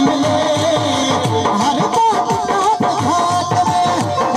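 Live folk music: a hand drum keeps a quick rhythm with deep strokes that drop in pitch, under a wavering melody line, with no singing words.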